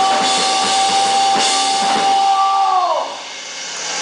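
Live hardcore band closing out a song: a held high electric-guitar tone rings over a few drum and cymbal hits. About three seconds in, the tone slides down in pitch and the music drops away.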